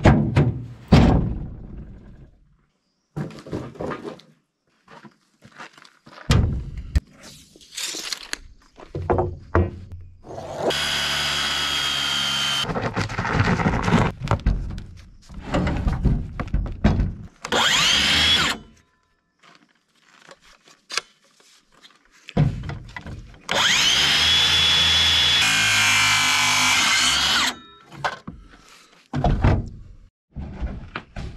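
Power saw cutting thick rough-cut lumber in several cuts, the longest about four seconds, with a steady motor whine during each. Between the cuts come thumps and knocks of heavy boards being handled.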